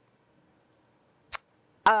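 Quiet room tone broken by one short, sharp click a little over a second in. Near the end a woman's voice begins a drawn-out, steady "um".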